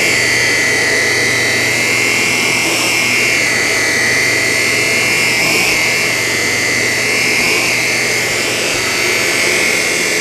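Shark Apex Powered Lift-Away DuoClean Zero-M vacuum running on its middle power setting, its floor nozzle and brushroll pushed over a low-pile rug: a steady, loud motor whine over a low hum, its pitch wavering slightly.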